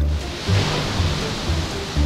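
A sudden rush of splashing water, starting sharply and fading away over about two seconds, as a man at a desk is drenched; background music with a bass line plays under it.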